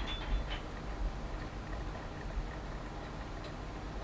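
A quiet, steady low hum, with a few faint light ticks in the first half-second.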